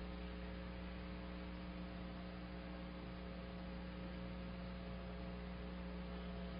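Steady electrical mains hum with a faint hiss under it, unchanging throughout.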